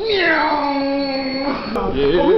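A person's voice drawing out one long vocal note that slides down in pitch at the start and then holds steady, cut off short near the end.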